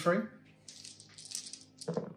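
A handful of black six-sided dice rattled together for about a second and rolled onto a tabletop gaming mat.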